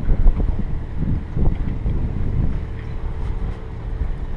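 Wind buffeting the microphone: an uneven low rumble that rises and falls in quick gusts, over a faint steady hum.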